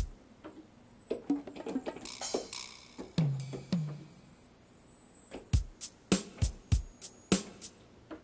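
Yamaha Piaggero NP-V80 digital keyboard's arpeggiator playing a drum pattern on a drum voice, with deep kick-drum-like hits. The beat breaks off briefly about halfway through, then picks up again.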